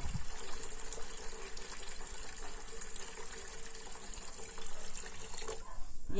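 Tap water pouring in a steady stream into an aluminium ring cake pan standing in a sink, filling it to soak.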